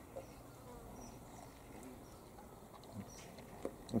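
An insect buzzing faintly, with a few soft clicks from a dog gnawing a lamb bone.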